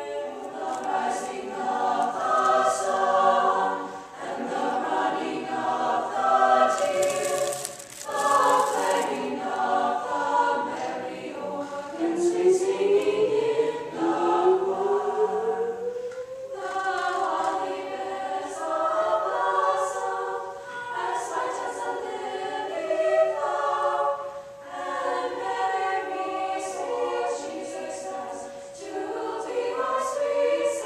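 Mixed-voice choir singing: a small group of young male and female voices at first, then a full school choir partway through, with held notes and rising glides. A brief hiss about seven seconds in.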